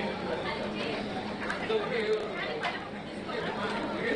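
Indistinct chatter of several people talking at once, with no single voice standing out, plus a few brief clicks.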